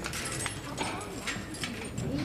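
Footsteps of hard-soled shoes on a hard floor, a series of uneven sharp clicks, with faint murmuring voices underneath.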